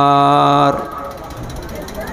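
A man's voice through a PA holding one long, steady chanted note at the end of an Arabic recitation phrase, cutting off under a second in. Then a quieter background noise with a faint fast ticking.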